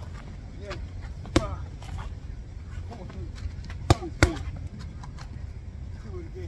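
Boxing gloves smacking into focus mitts: a sharp hit about a second and a half in and a quick two-punch pair around four seconds in, with fainter hits between. Short voiced grunts come with some of the punches.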